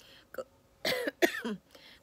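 A woman clearing her throat with short coughs, loudest about a second in.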